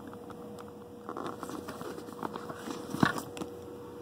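Handling noise as a candlepin bowling ball is lifted out of its divided carrying bag: light rustling and small clicks, with one sharper knock about three seconds in, over a faint steady hum.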